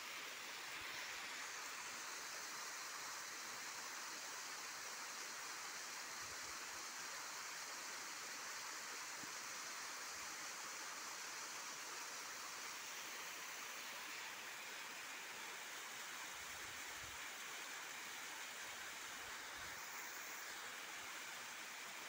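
Small waterfall pouring over rock into a shallow pool: a steady rush of falling water.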